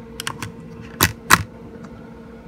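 An audio cable's plug being handled and plugged into the radio gear: a few light clicks, then two loud clacks about a third of a second apart, over a steady faint hum.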